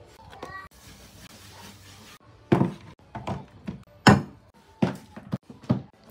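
A run of about seven sharp thuds and knocks, the loudest a little after four seconds in, as objects are handled and set down while tidying a bedroom.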